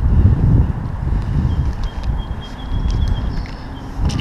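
Wind buffeting the microphone: an uneven low rumble, strongest at the start, with a faint thin high tone in the middle.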